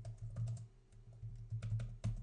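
Computer keyboard typing: scattered keystrokes, a few in the first half second and a quicker run near the end, over a steady low hum.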